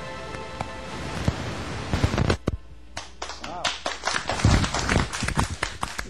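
The end of a live band's song: a held chord rings out under a cymbal wash, with a last few loud hits about two seconds in, then scattered hand clapping and a voice calling out "wow".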